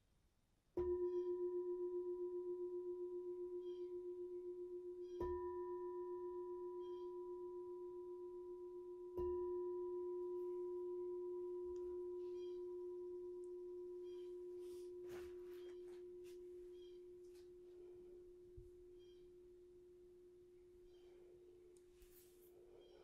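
A meditation bowl bell struck three times, about four seconds apart, each strike ringing on in one steady low tone that slowly fades. It signals the close of the meditation.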